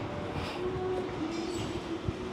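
A steady mechanical hum with a slightly wavering low tone over a continuous rumble.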